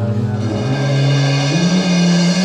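Live band music: a held low note steps up in pitch twice under a bright, steady high wash.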